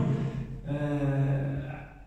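A man's voice ending a phrase, then holding a long, level 'aah' that fades out near the end.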